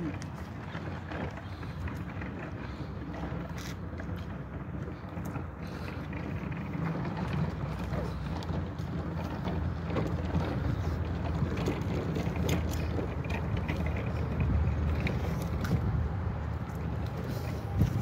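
Steady low outdoor rumble, fluctuating in level, with a few faint clicks.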